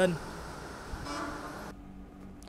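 Roadside traffic ambience with a brief vehicle horn sounding about a second in. The sound cuts off suddenly shortly before the end.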